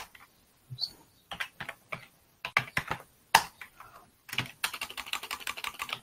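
Typing on a computer keyboard: scattered single keystrokes, then a quick run of keystrokes from about four seconds in.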